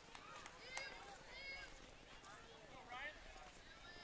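Faint, distant voices of players and spectators calling out and chattering, with a couple of light clicks.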